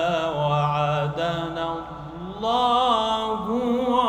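A man reciting the Quran in a slow, melodic chant, holding long wavering notes into a microphone. The phrase dips briefly a little before halfway, then a new one rises and is held.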